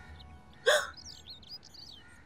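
A single short, startled vocal cry with a rising pitch about two-thirds of a second in, as a dropped mobile phone breaks. Faint bird chirps follow.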